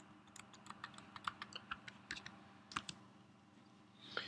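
Faint computer keyboard typing: a quick run of key clicks that stops about three seconds in.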